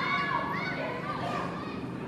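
High-pitched voices of several people shouting and calling out at once, overlapping, over a steady low hum of open-air background.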